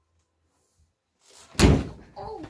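A door slamming shut once, a single heavy thud about a second and a half in, after a brief rush of noise as it swings.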